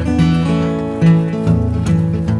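Strummed acoustic guitar in background music, with chords changing every half second or so.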